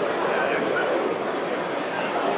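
Many people talking at once in a crowd, a steady babble of voices, with a few brief high-pitched calls over it about half a second in.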